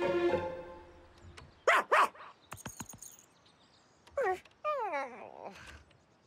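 Background music fading out, then a cartoon dog's voice: two short yips about two seconds in, and two downward-sliding whines a couple of seconds later.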